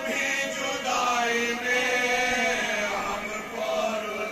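Men chanting a marsiya, a Shia mourning elegy, without instruments: a lead reciter at the microphone with the men beside him joining in, in long held notes.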